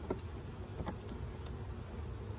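A few short clicks and scrapes of wooden hive frames being worked in a hive box, a frame held tight by wax build-up, over a steady low rumble.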